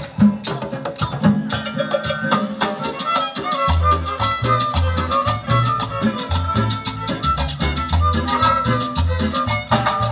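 A chanchona band playing cumbia live: violins carry the melody over a steady percussion beat. The upright bass comes in about four seconds in.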